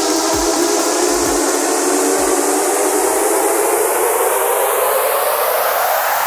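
Electronic dance music in a build-up. The kick drum stops a little over two seconds in, and a rising noise sweep swells over a sustained chord.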